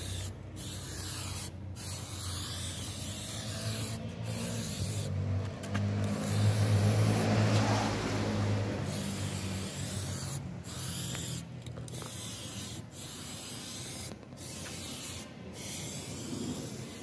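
Aerosol spray can hissing in long bursts with short breaks between them, with a cloth rubbing over the surface being sprayed. A low drone swells and fades in the middle and is the loudest sound there.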